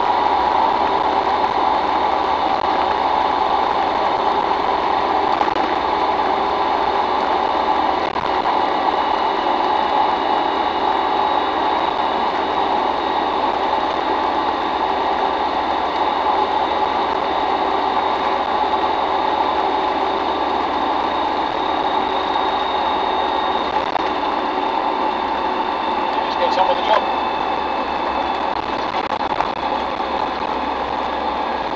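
Cab interior of a Land Rover Defender 90 TD5 on the move: its five-cylinder turbodiesel runs steadily at cruising speed under a constant drone of road and wind noise.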